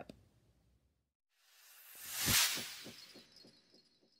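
Outro sound effect: a whoosh that swells up and peaks about halfway through, with a low hit that repeats in fading echoes and a high twinkling shimmer that trails away near the end.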